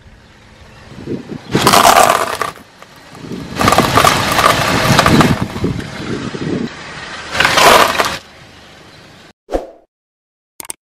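Car tyre rolling over and crushing small plastic containers and crunchy things on asphalt: cracking and crunching in three bouts, the longest in the middle. A brief knock near the end.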